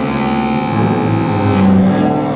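Free improvised ensemble music: several sustained pitched notes overlap, and lower notes come in about two-thirds of a second in, the strongest near the end.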